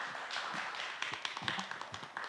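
Light applause from an audience, many quick, soft claps blurring into a steady patter.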